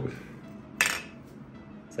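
Small plastic spinning top dropped onto a plastic toy dish, landing with a single sharp clack about a second in, then spinning faintly on it.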